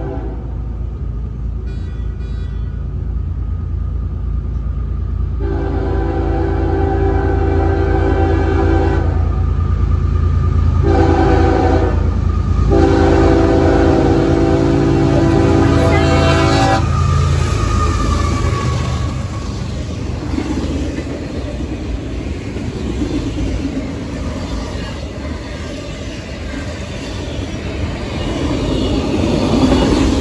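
Freight diesel locomotive's air horn sounding the grade-crossing warning: a long blast, a short one, then another long one, over the low rumble of its engine. Then the cars roll past with a steady rumble of wheels on rail.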